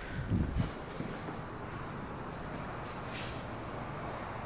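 A few low thuds about half a second in, then steady room noise with a faint hiss.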